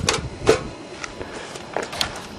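Cut pieces of a dehumidifier pan being fitted and overlapped by hand: a light knock at the start and a sharper clack about half a second in, then quieter handling.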